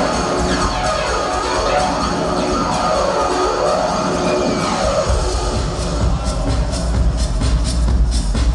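Electronic dance music from a DJ set over the venue's sound system. It opens on a build-up with no deep bass, then about five seconds in the heavy bass and a steady beat come back in.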